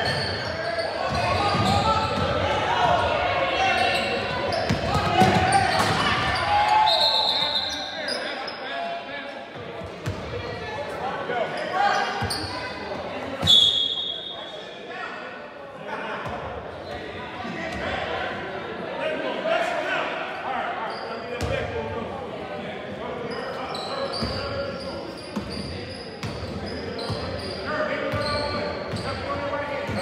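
A basketball being dribbled on a hardwood gym floor during a game, with spectators' chatter echoing around the hall. A short, shrill whistle blast sounds about halfway through.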